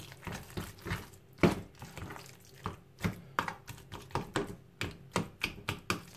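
A metal fork mashing boiled eggs and butter in a plastic container: irregular tapping and scraping strokes on the plastic, a few a second, with soft squelches.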